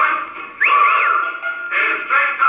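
Record playing on an HMV gramophone, its sound thin and boxy with no deep bass and nothing above the upper midrange. About half a second in, a gliding note rises and falls twice over a long held tone before the full band returns near the end.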